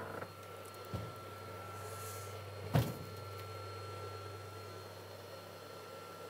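Quiet room with a steady low hum, broken by a soft thump about a second in and a sharper knock just before three seconds.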